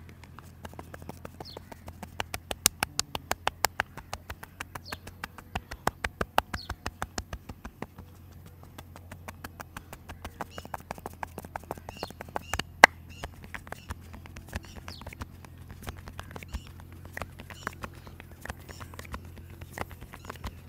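Rapid hand slaps and taps on a man's head during a percussion head massage, several a second. The strikes run in quick bursts, then lighter and sparser, with one sharp, much louder slap about 13 seconds in. Birds chirp faintly.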